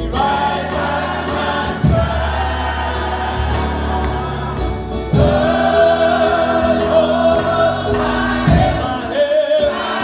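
Gospel choir singing, a man at the front singing into a handheld microphone, over accompaniment with sustained bass notes and a steady beat of about two to three ticks a second.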